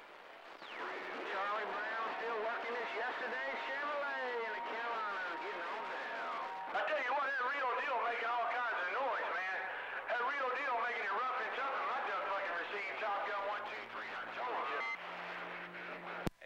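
Voices of other stations coming in over a CB radio's speaker: thin, garbled and overlapping, with a steady whistle over them for about the first six seconds.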